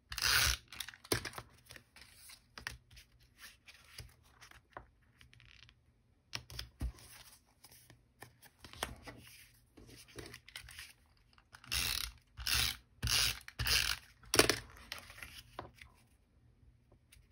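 A hand-held adhesive tape runner rasping across cardstock in short strokes, with paper and card pieces being handled. The strokes come in a tight run of four near the end.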